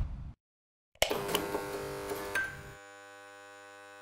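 Electronic logo sting for the outro card: a sudden hit about a second in, then a steady held chord of several synthesized tones.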